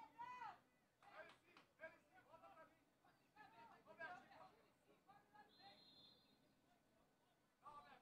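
Near silence on an open football pitch, with faint distant shouts and calls from the players.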